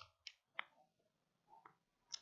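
Near silence, broken by two faint, brief clicks about a third of a second apart.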